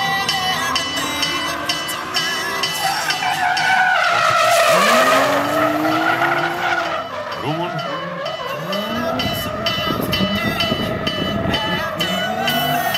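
Drift car sliding through a corner: its engine revs rise and fall as the throttle is worked, with loud tyre squeal and skidding that peaks about four to six seconds in.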